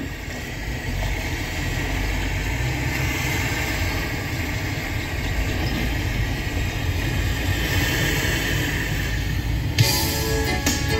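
Road and engine noise heard inside a car's cabin as it pulls away from a stop and drives on, a steady rumble that grows louder about a second in. A sharp knock comes near the end.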